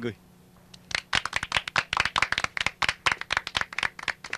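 A small group of people clapping, starting about a second in and going on steadily.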